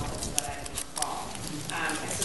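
Low, indistinct talk between people, broken by several sharp light clicks and taps.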